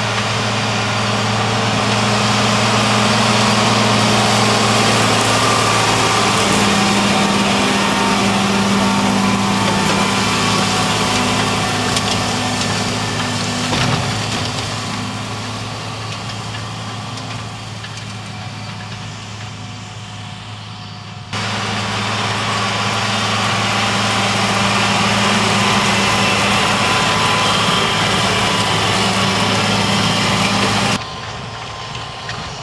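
Large farm tractor's diesel engine running steadily under load as it pulls a planter with tillage units through the soil. It fades for a while, then comes back louder suddenly about two-thirds of the way through.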